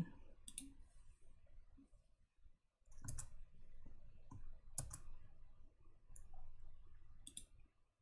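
Faint computer mouse clicks, a handful of single clicks spread irregularly a second or two apart.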